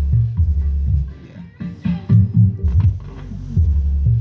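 A song's bass line played through a subwoofer, with the vocals filtered out by a subwoofer tone control: deep bass notes in a repeating pattern, with little of the rest of the music left.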